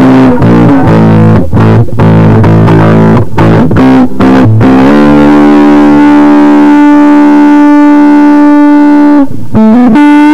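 Electric guitar played through a Big Muff–style fuzz pedal, the Big Zed Muff: a choppy, heavily distorted riff with short breaks between notes, then one long sustained fuzz note held from about halfway until near the end, where a brief break leads into a new note.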